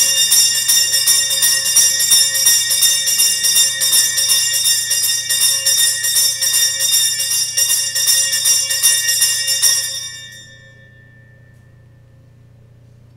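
Altar bells, a cluster of small sanctus bells, shaken in a rapid continuous peal to mark the elevation of the chalice at the consecration. The ringing stops about ten seconds in and fades out over the next second.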